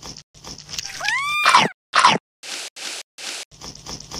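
Added stop-motion sound effects: a short cartoonish rising squeal about a second in, followed by two sharp crunches and then three evenly spaced bursts of crunching, like bites.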